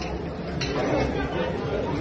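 Indistinct chatter of many people talking at once in a large dining room.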